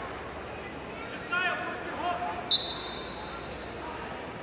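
A referee's whistle gives one high, steady blast of about a second, a little past the middle, restarting the wrestlers from the neutral position after an escape. Just before it, voices call out over the background noise of a large hall.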